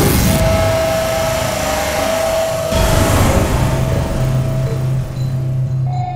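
Suspenseful background score: a steady low drone under one held high note, with two rushing swells of noise, one at the start and one about three seconds in.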